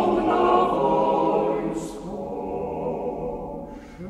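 Male vocal octet singing a cappella in close harmony, holding sustained chords; the singing falls quieter about halfway through.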